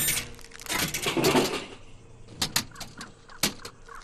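Cartoon vending machine sound effects: a whirring burst at the start, then several sharp clicks and clunks of the dispensing mechanism. A short laugh comes about a second and a half in.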